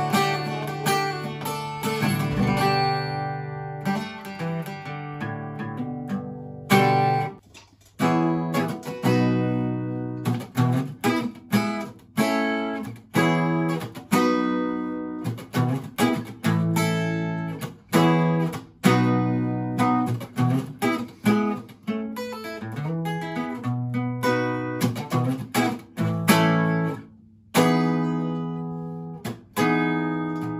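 Alvarez AF30CE folk-size steel-string acoustic guitar played unplugged: chords, barre chords among them, strummed and picked, each ringing out and decaying. It opens on one long ringing chord, with a couple of brief pauses later on.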